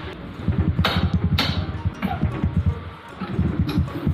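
Music with a fast, pulsing bass line, with two sharp hits about a second in.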